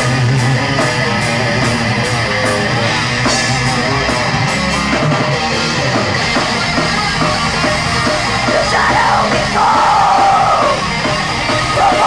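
Death metal band playing live: distorted electric guitars and a drum kit in a loud, dense, continuous wall of sound.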